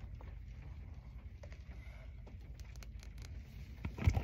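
Low steady rumble of a car interior, with a few faint clicks and rustles as small makeup items are handled.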